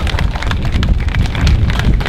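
Wind buffeting the microphone: a loud, irregular low rumble with crackle.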